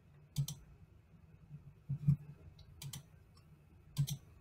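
Computer mouse button clicking: four faint, sharp clicks spread a second or two apart, each a quick double tick of the button pressing and releasing.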